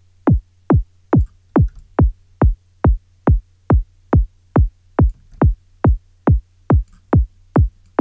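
Synthesised kick drum from the Kick 2 drum synth looping a little over twice a second. Each hit is a sine wave sliding quickly down in pitch into a deep thump, with no separate click transient. This is the low-end layer of a drum and bass kick, sweeping downward through its whole decay rather than settling on a note.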